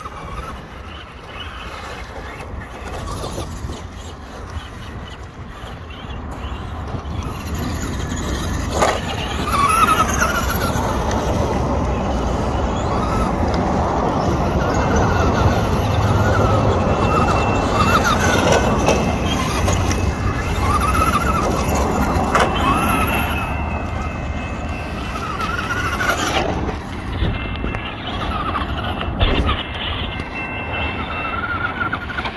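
Traxxas Rustler RC truck's motor whining in repeated rising and falling surges as it is throttled on and off, growing louder from about eight seconds in.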